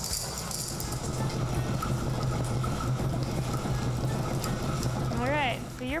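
Pedal-powered honey extractor, a centrifuge, spinning frames of honeycomb in its steel drum: a steady whirring drone with a low hum. A voice breaks in briefly near the end.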